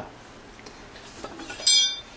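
A few faint clinks, then near the end a short, very high-pitched "eee" squeal from a woman's voice: a mock horror-film shriek.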